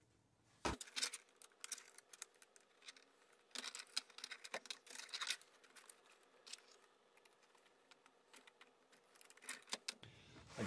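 Hands taking an inline skate apart to free its wheels: small metal-and-plastic clicks, ticks and scrapes from tools and axle bolts on the skate frame, in several short clusters, with a duller knock about a second in.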